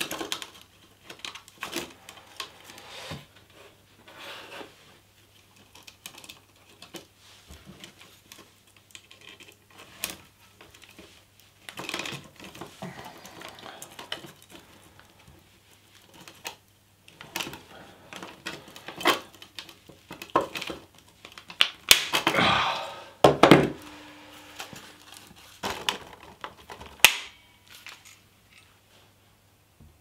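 Thin sheet steel from beer cans being handled and bent into a cylinder, crinkling and rattling, with the clacks of a hand pop riveter setting rivets through it. There are several louder bursts in the second half and a few sharp clicks.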